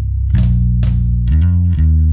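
Fender Precision Bass played through the Magic Pedals Conan Fuzz Throne fuzz pedal into a Darkglass amp: a heavy, distorted bass riff in low notes, two picked notes followed by a few quick changes of pitch near the end.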